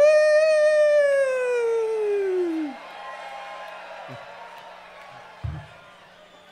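A man's long yell through the PA, rising briefly and then sliding down in pitch over nearly three seconds. Crowd noise from the audience follows, with a low thump near the end.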